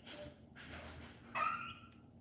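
A H'mông chicken gives one short call, rising in pitch, about one and a half seconds in, with a few faint taps from its pecking at feed around it.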